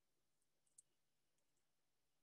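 Near silence: room tone with a few faint, short clicks in the first half.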